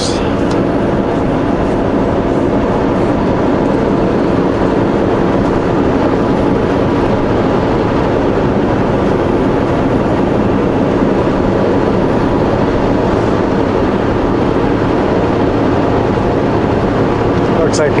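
Steady drone of a semi truck's diesel engine and road noise, heard from inside the cab while cruising at highway speed. Several steady engine tones sit over a low rumble, unchanging throughout.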